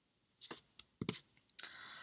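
A few faint, short clicks spread through the pause, followed by a short soft hiss near the end.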